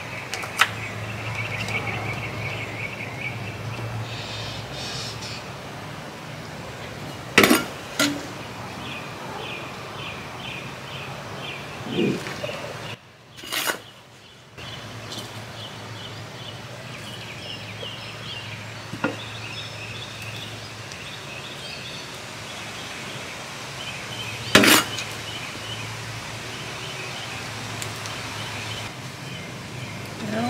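Outdoor chorus of chirping animals, short pulsed chirps repeating steadily over a low hum, broken by a few sharp knocks of plant pots being handled on a glass-topped table, the loudest about a quarter of the way in and again near the end. The background briefly cuts out about halfway through.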